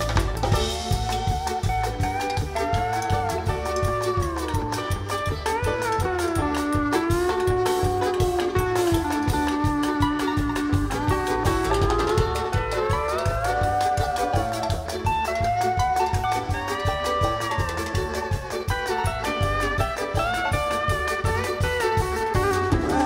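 Live string band with drum kit, congas and bass playing an instrumental passage over a steady beat, a lead melody line sliding and bending in pitch above the rhythm.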